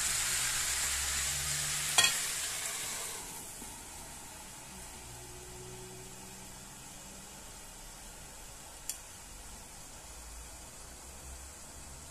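Chicken sausage and fresh spinach sizzling in a frying pan. About two seconds in a sharp clank as the glass lid goes on, after which the sizzling is muffled and quieter; one more light click near the end.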